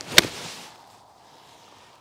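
Golf iron striking the ball and then the turf: one sharp, crisp strike about a fifth of a second in, dying away within half a second. It is a clean ball-then-turf strike that takes a divot.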